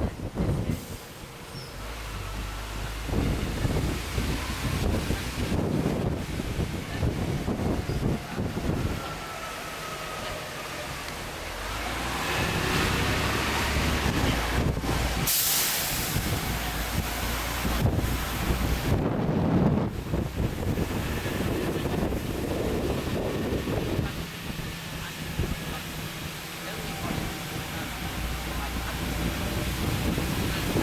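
Open-top double-decker tour bus under way: engine and road rumble mixed with wind on the microphone, rising and falling in loudness, with a brief sharp air-brake hiss about halfway through.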